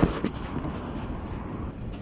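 Steady outdoor background of road traffic, with a brief knock from the phone being handled right at the start.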